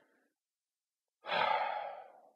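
A man sighs once, a long breath out starting about a second and a quarter in and fading away.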